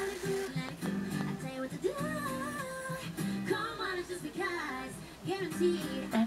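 Female vocal group singing live in close harmony, several voices layered over acoustic guitar accompaniment.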